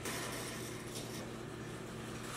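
Faint steady hiss with a low hum, with no distinct sound event standing out.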